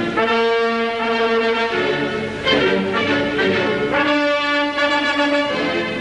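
Orchestral music led by brass, playing long held chords in two phrases, the second beginning about two and a half seconds in.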